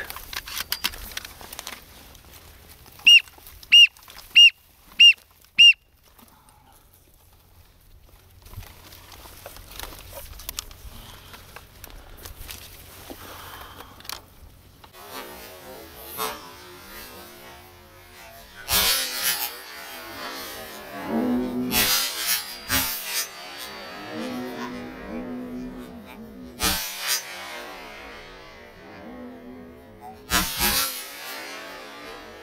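Five short, high whistled calls in quick succession a few seconds in. From about halfway on come rough, rasping duck calls, broken by several sharp knocks.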